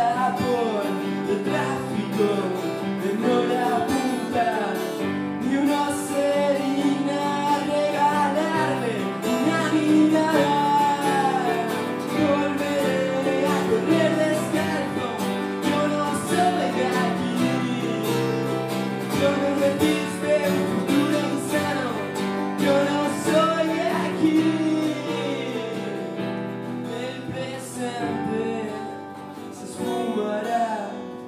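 Acoustic guitar and keyboard playing a song live together, with a voice singing over them. The playing grows softer over the last few seconds.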